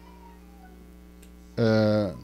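A low, steady hum for about a second and a half, then a man's voice into a handheld microphone holding one drawn-out syllable at a low, level pitch for about half a second.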